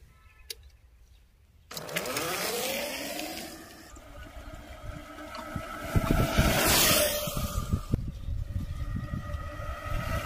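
Homemade electric bicycle's 775 DC motor starting suddenly about two seconds in, its whine rising in pitch over a second or so and then running at a steady pitch as the bike rides along.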